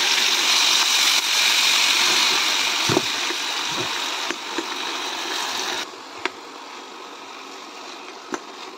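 Tomatoes and onion frying in hot oil in a kadai: a loud, steady sizzle that drops abruptly to a quieter hiss about six seconds in. A metal ladle knocks against the pan a few times.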